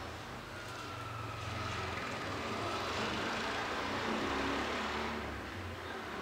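A passing vehicle: a broad rushing engine noise that swells to a peak a few seconds in and then fades.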